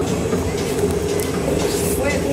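A steady mechanical hum of several held low tones, with a hiss that rises toward the end.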